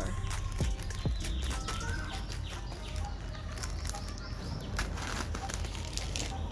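Plastic courier mailer and foam packaging rustling and crinkling as they are handled and cut open with scissors, in a steady run of irregular crackles.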